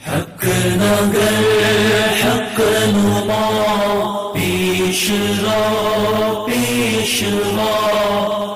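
Devotional chanting in the style of a nasheed: a sung melody in long held phrases with brief pauses between them. It begins about half a second in, after a short sound at the very start.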